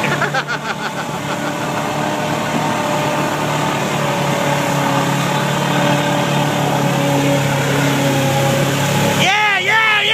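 Pickup truck engine running at steady revs as the truck churns through deep mud and water, over a wash of spray noise. Near the end, people shout.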